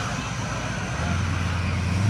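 An engine running, heard as a low steady hum that comes in about halfway and steps up in pitch near the end, over a steady noisy background.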